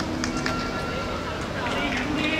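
Footballers' voices calling out on the pitch, too distant or blurred to make out as words, with a few short sharp knocks a quarter to half a second in.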